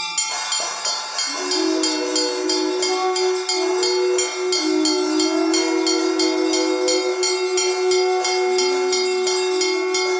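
Temple reed pipes of the nadaswaram kind holding one steady note with a melody moving above it, over a hand bell rung rapidly at about four strokes a second for the lamp offering (arati).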